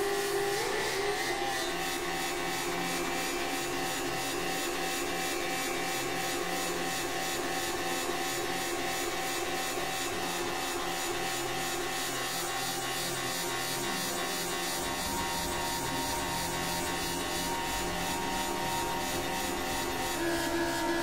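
Experimental electronic drone: several held synthesizer tones over a grainy, rasping noise texture with a fast flutter. A deep low rumble comes in about fifteen seconds in.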